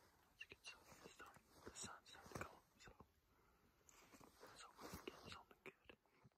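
Very faint whispered speech in short, scattered snatches, barely above silence.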